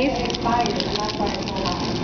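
Quiet voices, with the crinkle of cellophane fortune-cookie wrappers being handled.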